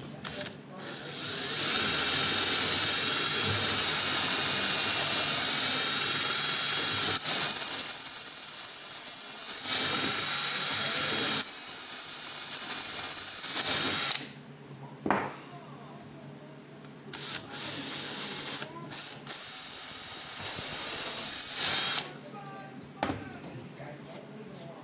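Ryobi cordless drill running at high speed, its bit boring a hole through the rear spar guided by a drill jig block, with a steady high whine. It runs for about twelve seconds, stops, then runs again for about five seconds near the end.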